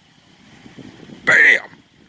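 Faint outdoor background noise of a stormy night, with one short vocal sound, like a brief exclamation, about a second and a half in.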